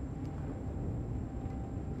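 Twin 1,200 hp MAN V8 diesel engines of a 66 ft flybridge motor yacht running steadily at about 1,700 RPM on the plane, heard from inside the lower helm as a steady low drone.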